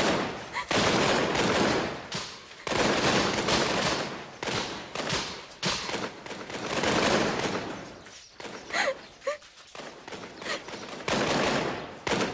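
Musket fusillade: many shots in quick succession that run together into a continuous crackle for most of the first eight seconds. After that the shots grow scattered, with a brief cry, and a fresh burst comes near the end.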